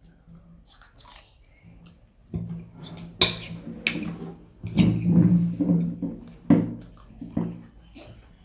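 Hurried eating of lasagna: chewing, with forks clicking and scraping on ceramic plates. There are sharp clinks about three and four seconds in, and again near the end.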